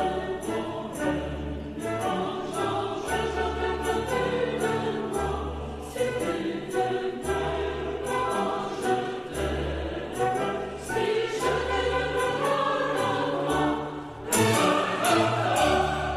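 Recorded classical choral music: a choir singing with orchestra in an operatic style, over a steady bass pulse about once a second and sharp percussion strokes.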